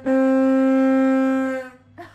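A horn sounded by squeezing a pair of wooden hand bellows: one steady, reedy note held for about a second and a half, then dying away.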